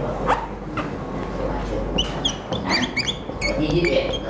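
Whiteboard marker squeaking as words are written: a quick series of short, high-pitched squeaks, mostly in the second half.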